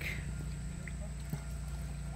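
Quiet outdoor background: a steady low hum with a few faint ticks and no larger event.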